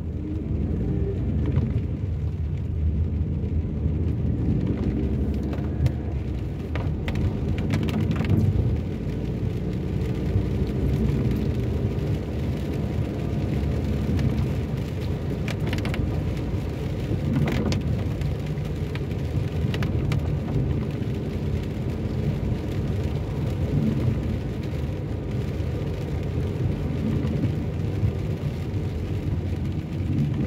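Steady low rumble inside a moving car on rain-wet roads, from the engine and the tyres on wet tarmac, with rain falling on the car.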